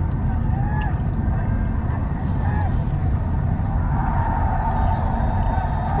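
Steady low rumble of a Mercedes-Benz car driving on a city road, under the background sound of a football match broadcast during a gap in the commentary. The broadcast's background noise swells about four seconds in.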